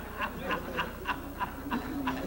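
A man laughing heartily in a quick, even run of short 'ha' sounds, about three a second.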